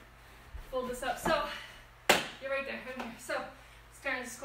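A woman's voice in short phrases, with one sharp slap about two seconds in as the yoga mat is dropped over the plastic step platform.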